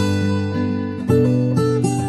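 Background music of a strummed acoustic guitar, with a new chord struck about a second in.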